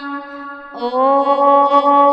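Devotional mantra chanting over a steady drone. About a second in, a voice begins a long held 'Om', sustained on one pitch.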